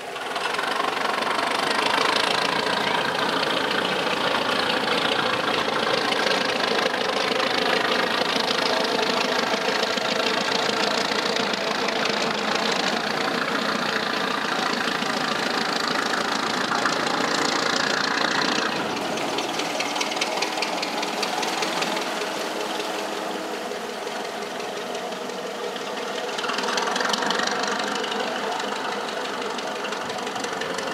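An engine running steadily, with a dense, even hum. It drops away abruptly about 19 seconds in and swells again near the end.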